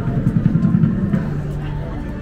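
A low, uneven rumble that settles into a steady low hum about halfway through, like a vehicle engine, with faint voices of passersby in the background.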